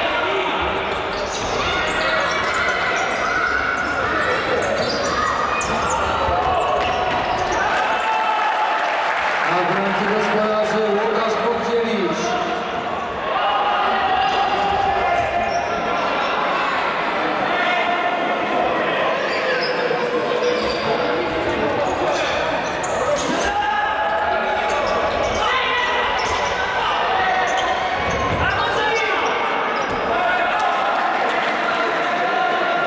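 Futsal ball being kicked and bouncing on a sports hall floor, with overlapping voices of players and spectators carrying through the hall.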